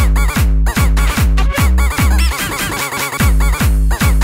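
Jumpstyle electronic dance music: a heavy kick drum with a falling pitch about every 0.4 s under a stabbing synth lead. The kick drops out for about a second past the middle, then comes back.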